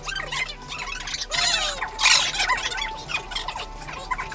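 Fast-forwarded sound of men eating yakisoba noodles: slurps and voices sped up into high, squeaky chirps and glides, with a few loud noisy bursts.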